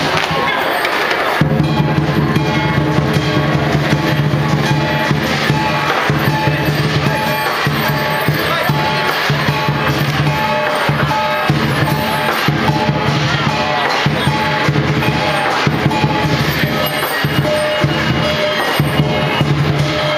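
Chinese lion dance percussion: a big drum beaten without pause together with clashing cymbals, loud and continuous.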